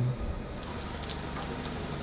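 Water from a garden hose spraying and pattering steadily on the bodywork of an old Porsche 964 as it is rinsed.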